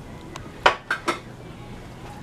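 Metal pots and pans clanking against each other as they are handled: a handful of sharp clanks within about a second, the loudest about two-thirds of a second in.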